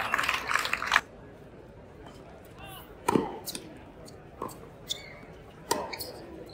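Crowd voices and clapping for about the first second, cutting off suddenly. Then a tennis rally: a sharp racket strike on the ball about three seconds in, followed by several more crisp racket hits and ball bounces on the hard court.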